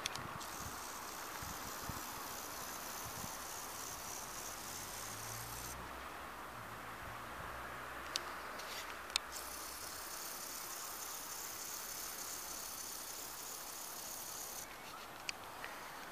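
Quiet outdoor background: a steady hiss with a faint low hum of distant traffic, broken by a few small sharp clicks, the loudest about nine seconds in.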